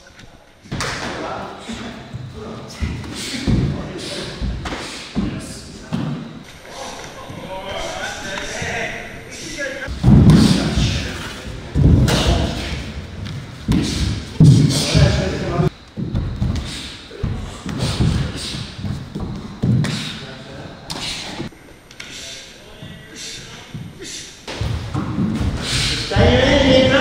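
Repeated thuds of punches and kicks landing on bodies and gloves in full-contact sparring, coming in quick flurries, the heaviest a little before halfway through.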